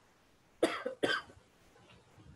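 A person coughing twice in quick succession, about half a second apart.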